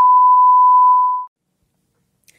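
A loud, steady 1 kHz test tone, the reference beep that goes with TV colour bars, cutting off sharply about a second into the clip.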